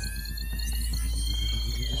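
Cartoon sound effect of a toy blaster powering up: a loud, deep, steady electronic hum with a rapid high-pitched pulsing beep over it.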